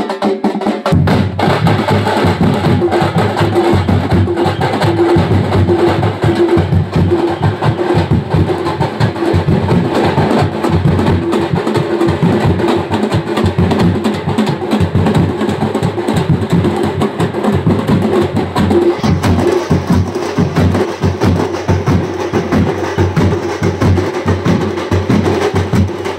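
A troupe of drummers beating large double-headed drums with sticks in a fast, dense rhythm. The full drumming comes in hard about a second in.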